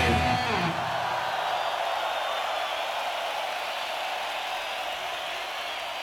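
A huge open-air concert crowd cheering and shouting after a heavy metal song ends, a steady roar that slowly fades. The band's last notes die away in the first second.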